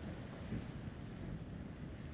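Faint, steady outdoor background noise with a low rumble, without distinct events.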